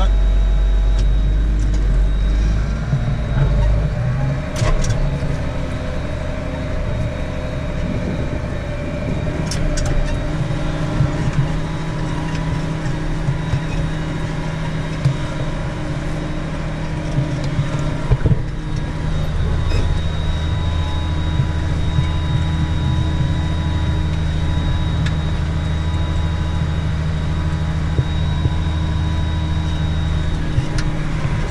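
Case IH Magnum tractor's diesel engine running steadily under load as it pulls a no-till drill, heard from inside the cab, with scattered small clicks and rattles. The deep part of the drone drops away a couple of seconds in and comes back strongly about two-thirds of the way through.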